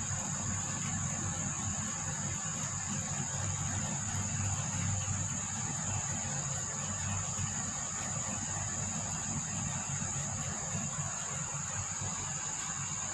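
A steady, high-pitched drone of insects with a low, steady rumble underneath.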